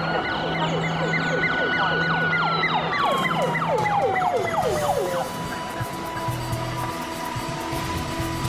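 An emergency vehicle's siren holds a high note for about two seconds, then slides steadily down in pitch and dies away about five seconds in, over a low steady hum.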